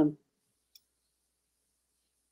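Near silence: a woman's voice trails off at the very start, then only faint room hiss with one tiny click a little under a second in.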